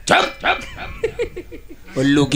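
A man imitating a dog's barking into a stage microphone: two loud barks near the start, then a run of shorter yips.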